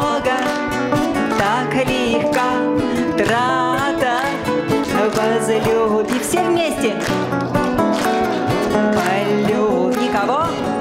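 A woman singing a song with vibrato, accompanied by two acoustic guitars, with the audience clapping along.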